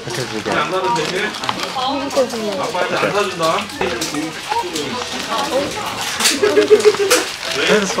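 Two people talking while small cardboard blind boxes are handled and opened by hand, with a few short clicks and scrapes of the packaging among the voices.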